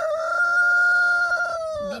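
The drawn-out end of a rooster's crow: one long held note that dips slightly in pitch and stops just before the end.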